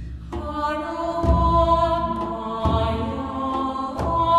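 Background music: long held notes over slow, deep drum beats about a second and a half apart.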